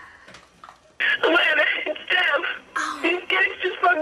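A voice speaking a recorded phone message played back through an answering machine's speaker, with thin, telephone-like sound. It starts about a second in, after a brief quiet moment.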